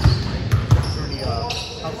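Basketballs bouncing on a gym floor: a few low thumps in the first second, with voices in the background.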